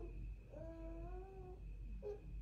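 A single long, slightly rising vocal call, held for about a second.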